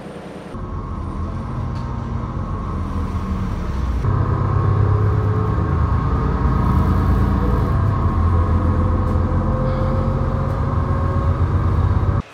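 City bus running, heard from inside the passenger cabin: a steady low engine and drivetrain drone with a fainter whine slowly rising in pitch. It grows louder about four seconds in.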